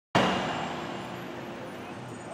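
City street ambience, mostly traffic noise, starting abruptly just after the opening and easing off slightly.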